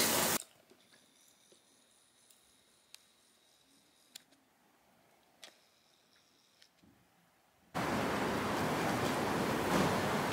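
Near silence with a few faint clicks, then from about eight seconds in a steady rushing background noise of an indoor parking garage as someone walks across its concrete floor.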